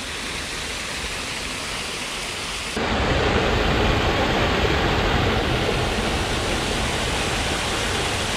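Water splashing steadily down the stone ledges of a small garden waterfall. About three seconds in, it switches to a louder, fuller rush of a waterfall pouring into a pool.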